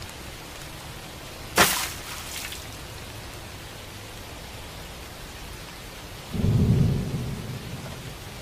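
Rain sound effect, a steady hiss, with a sharp splash about a second and a half in as the boys dive into the flood water. Near the end comes a low rumble of thunder.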